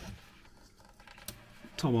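A plastic tub's lid being opened: faint handling noise with a few light clicks.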